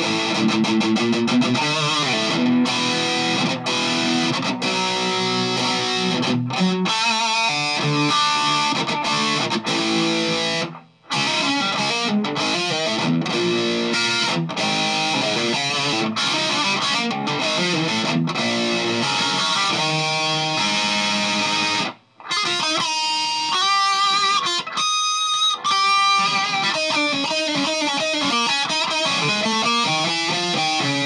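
Electric guitar played through a Boss ME-50 multi-effects unit on its Metal distortion setting with the variation engaged, giving a thick, heavily distorted sound with the bass turned down. Continuous riffs and chords, stopping briefly twice, about 11 and 22 seconds in.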